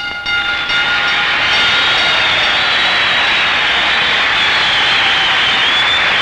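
Fire alarm ringing steadily at a high pitch. It takes over as a held orchestral note fades out in the first second or so.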